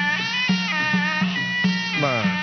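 Traditional Khmer boxing ring music: a sralai (reed pipe) plays a melody whose notes bend up and down, over a steady drum beat of about two strokes a second.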